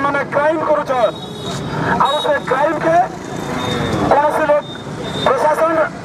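Speech: a man speaking into a hand-held microphone.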